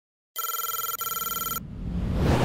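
An electronic telephone ring in two back-to-back rings, together about a second long, cutting off abruptly; then a whoosh with a low rumble that swells toward the end.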